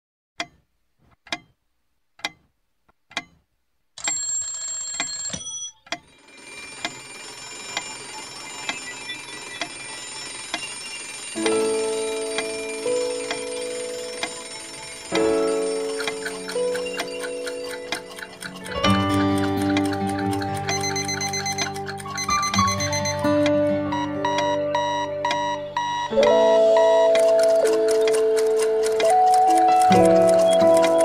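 Instrumental intro of a song: four clock-like ticks about a second apart, then a brief bright ringing, then a soft sustained keyboard pad. Melodic notes enter about eleven seconds in and the arrangement builds into a fuller, louder band sound.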